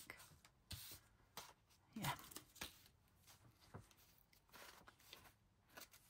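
A few short, faint paper rustles and slides as cardstock pockets are handled and set into a handmade paper journal.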